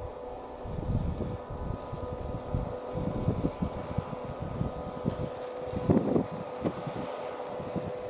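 Wind buffeting the microphone in irregular low gusts, over a faint steady hum.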